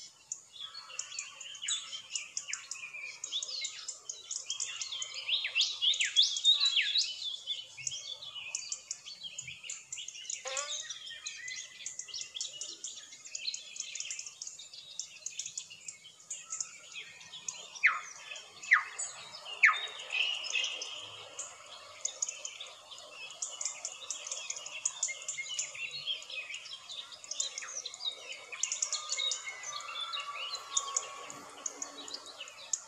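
Many birds chirping and calling together in a dense chorus of rapid high chirps, with three louder falling calls in quick succession about two-thirds of the way through.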